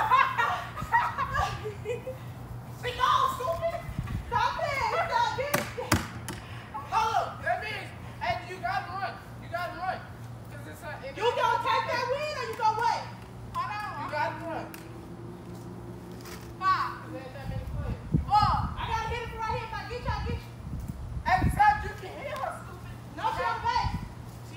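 Children and teenagers shouting and calling out to each other during a backyard ball game, with laughter and a few sharp knocks, over a low steady hum.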